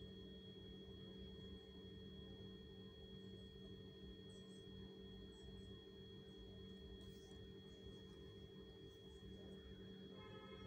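Near silence: a faint steady hum made of several high and low pitches, with a few faint short scratches of a marker and plastic curve ruler moving on pattern paper.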